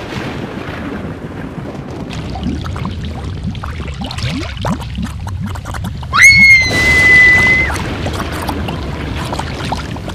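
Rushing, gurgling water noise with short rising squeaks. About six seconds in comes a loud, high-pitched scream, held on one pitch for about a second and a half.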